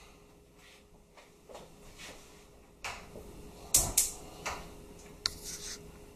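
Light kitchen clatter of a metal colander and skillet as fettuccine is tipped into the pan: scattered knocks, the loudest two close together about four seconds in, and a few more clicks near the end, over a faint steady hum.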